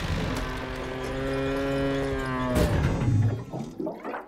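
Cartoon tractor letting out one long, low, moo-like groan as it tips over onto its back. The groan ends in a short noisy burst about two and a half seconds in, followed by laughter near the end.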